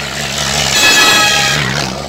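A truck passing close by on the highway: a rush of road and engine noise that swells to a peak about a second in and fades away, with a high whine at its loudest.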